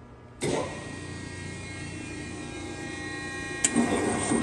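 Cincinnati 60CBII hydraulic press brake's pump motor starting up about half a second in, with a sudden jump in level, then running with a steady hum and whine. A single sharp click near the end.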